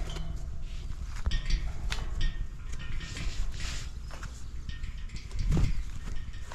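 Footsteps on grass with camera handling knocks and scuffs, over a steady low rumble. The rumble swells briefly near the end.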